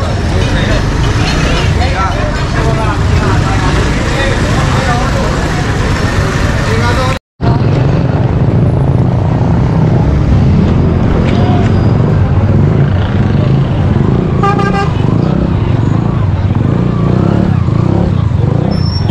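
Busy street ambience: many people chattering over the steady rumble of motorcycles and traffic. The sound breaks off for a split second about seven seconds in, and a vehicle horn sounds briefly about two thirds of the way through.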